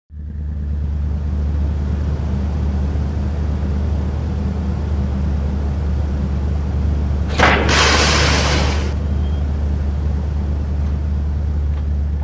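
A steady low rumble with a deep hum. A burst of loud hissing noise about seven seconds in lasts a second or two.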